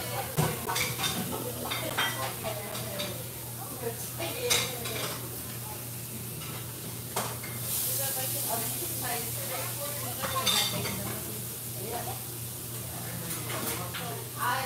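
Restaurant dining-room clatter: dishes and cutlery clinking and knocking at irregular moments, over a steady low hum, with a brief hiss about eight seconds in.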